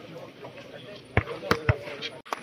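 A volleyball bounced three times on a dirt court, three quick thuds about a quarter of a second apart, typical of a server bouncing the ball before serving.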